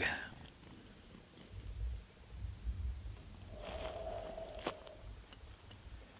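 Quiet outdoor ambience with a low, uneven rumble on the microphone. A faint held tone sounds for about a second past the middle, followed by a single click.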